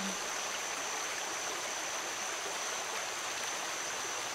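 Steady rushing of a flowing stream, with a continuous high-pitched tone held above it.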